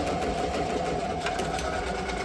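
Ricoma multi-needle commercial embroidery machine stitching out a patch, a steady rapid clatter of the needle bar working at speed.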